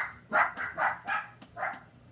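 A dog barking repeatedly, about five short barks in quick succession that stop near the end.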